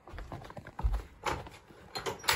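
Footsteps on wooden porch boards: a few heavy, separate steps, the strongest about a second in.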